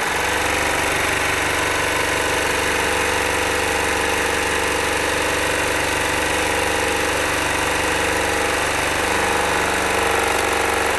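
Baby Lock Victory serger stitching a three-thread rolled hem along a fabric edge, starting up at once and running at one steady speed throughout.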